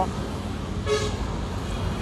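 A Kubota K7 single-cylinder diesel engine idling with a steady low rumble. A single short horn-like toot sounds about a second in.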